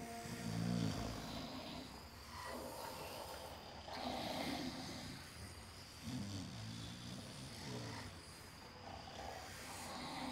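People snoring in their sleep, one long snore every two to three seconds.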